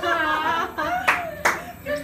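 A drawn-out vocal exclamation, followed by two sharp hand claps about a second in, roughly half a second apart.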